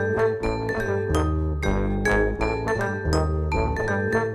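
Vibraphone played with mallets in a quick run of struck, ringing notes over held electric bass guitar notes, in a live jazz performance.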